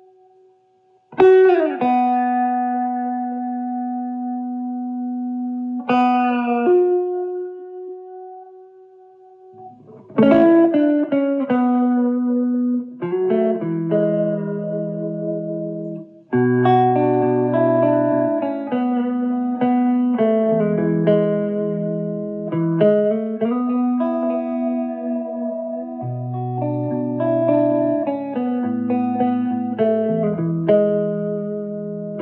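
Clean electric guitar: an Epiphone Wildkat's neck dog-ear P90 pickup through a Marshall Origin 50 with slapback tape echo and reverb. Two long ringing notes open the playing, then about ten seconds in it moves to busier picked chords and bass-string lines.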